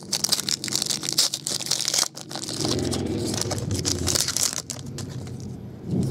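Foil trading-card pack wrapper being torn open and crinkled by hand, a dense crackle for the first two seconds, then more crinkling and rustling of the wrapper and cards that eases off toward the end.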